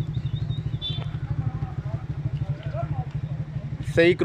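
A small engine idling steadily with a fast, even low pulse, with faint voices in the background.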